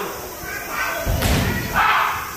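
A heavy thud of a body landing on the mat in an aikido throw and breakfall, about a second in.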